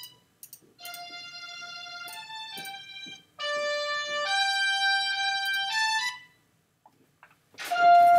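Reason's ID8 software instrument plays back a short single-line melody of sustained notes, first on a strings patch. A little over three seconds in, the melody gets louder on a brass patch. It stops about six seconds in, and a new note starts near the end.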